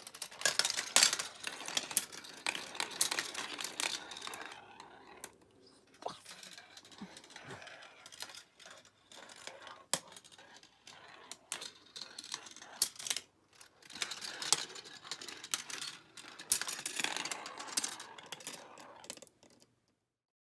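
Steel marbles clicking and rattling along the rails and through the plastic pieces of a GraviTrax marble run, with plastic track pieces being handled. Many sharp clicks come in irregular clusters, and the sound stops abruptly near the end.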